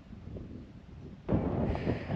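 Wind buffeting the camera's microphone: a low rumble that jumps to a strong gust about a second and a half in.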